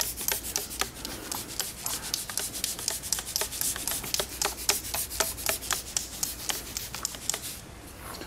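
Trigger spray bottle being pumped rapidly, a quick even series of short spray hisses as rinseless wash solution is misted onto a car door panel. The spraying stops shortly before the end.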